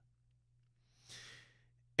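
A man's single short, soft breath into a close studio microphone, lasting about half a second around the middle of a pause in his talk.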